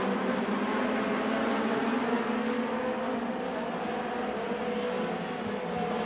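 Mini stock race cars running at speed on a dirt oval, heard as a steady drone of overlapping engines.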